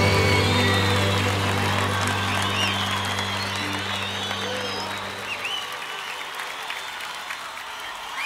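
Live audience applauding, with high whistles and calls, as the band's final held low note fades away about five seconds in.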